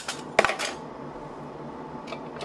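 Glass mason jars with metal screw bands clinking together once, a sharp knock that rings briefly, with short scrapes of a band being twisted on the jar threads just before and after.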